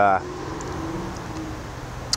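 A man's brief 'uh', then a steady background hum with a faint held tone underneath.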